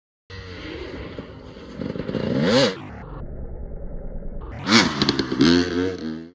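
Dirt bike engine running and revving: the pitch climbs and falls back about two and a half seconds in, then twice more near the end.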